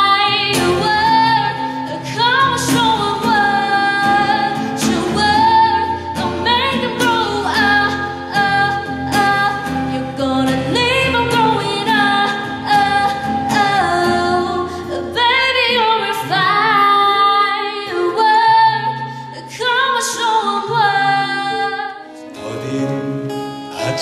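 A woman singing a song into a hand microphone, accompanied by acoustic guitar.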